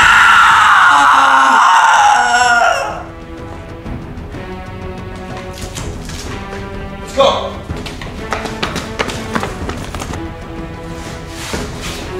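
A loud scream of pain lasting nearly three seconds and falling in pitch, over background music; a second, shorter cry comes about seven seconds in.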